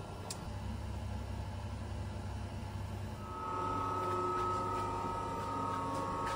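Lab room tone: a low steady rumble, then from about halfway a steady electrical hum with a few high whining tones from the lab equipment.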